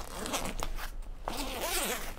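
Zipper of an Osprey Farpoint travel backpack being pulled open around the main compartment, a quick run of short scraping strokes.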